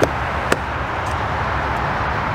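Exterior door handle of a 2024 Chevrolet Silverado ZR2 Bison being pulled: a click right at the start and the latch clicking open about half a second in, as the front door is swung open. Steady outdoor background noise runs underneath throughout.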